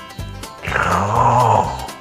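Background music with a short, rough growl-like sound starting just over half a second in and lasting about a second, falling in pitch as it goes.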